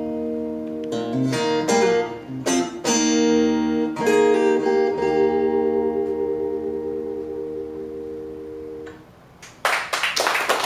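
Acoustic guitar strumming the closing chords of a song, ending on a final chord that rings and slowly fades for about five seconds. Applause breaks out right at the end.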